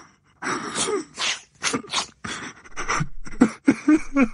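A boy sobbing: a run of loud, breathy gasping cries, about two a second.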